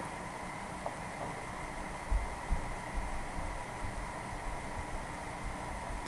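Steady low hiss and faint hum of room tone, with a light click about a second in and a few soft low thumps from about two seconds on.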